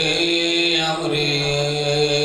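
A man's voice chanting a Muharram masaib elegy into a microphone in long, steady held notes, with a brief break about a second in.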